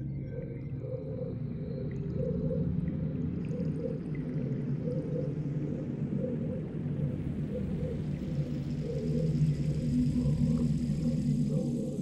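Abstract ambient soundscape: a low, steady, layered drone that grows a little louder about nine seconds in.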